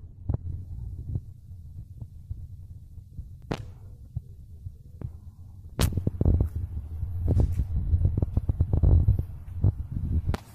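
Car engine idling, heard as a low, steady throb close to the open engine bay. About six seconds in a sharp knock is followed by louder, choppy rumbling and clicks from the phone being handled.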